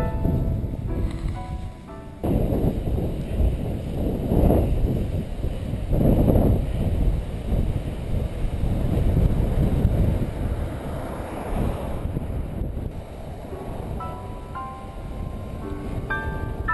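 Piano music for about two seconds, then a sudden cut to wind rumbling on the microphone while cycling along, loud and low. Piano notes come back near the end.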